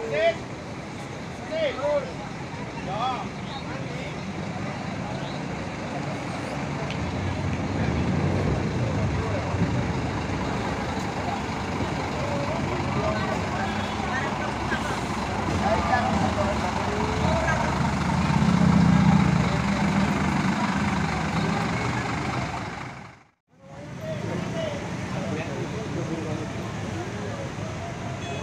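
Diesel engine of a three-axle tour coach fitted with an aftermarket racing exhaust, running at low revs as the bus pulls away. Its rumble swells about 8 seconds in and is loudest around 18 to 20 seconds. The sound cuts out for a moment near the end.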